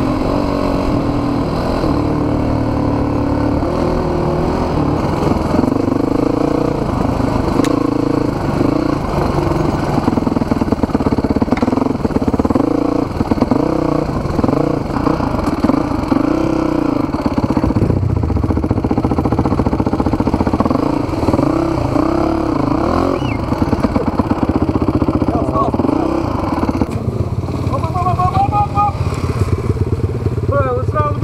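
Enduro motorcycle engine, heard from the rider's helmet, running steadily and then revved up and down again and again as the bike picks its way over rough ground.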